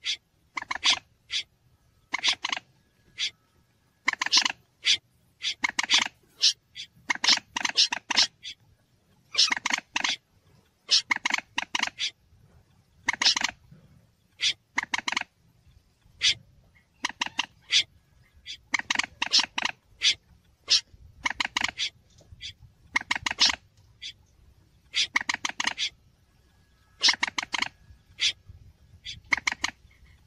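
Looped bird-lure recording of Mandar (common moorhen) and Berkik (snipe) calls: short bursts of rapid, rattling clicks, repeated every second or so, some running together into longer clusters. A faint low hum sits underneath.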